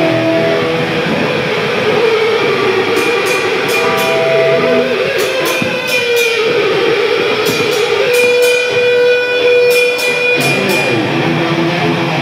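Live black-thrash metal band playing: distorted electric guitar holds long notes that waver, then settle into a steady one, over drums with repeated cymbal crashes.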